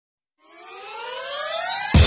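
Electronic intro music: after a brief silence, a synth riser climbs steadily in pitch and loudness, then a heavy dubstep bass drop hits right at the end.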